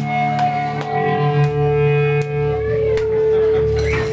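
Amplified electric guitar and bass letting a chord ring out through the amps, several notes held steady with a few sharp ticks over them; the low notes stop about two and a half seconds in while one higher note keeps sustaining.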